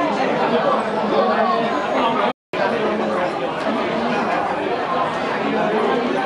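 Overlapping chatter of several voices talking at once. It cuts to complete silence for a split second a little over two seconds in, then carries on.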